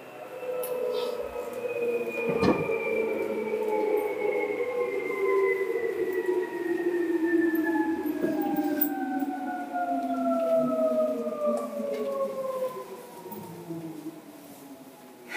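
Seibu 2000 series electric train running, its traction-motor whine falling steadily in pitch as the train slows. A sharp knock comes about two and a half seconds in.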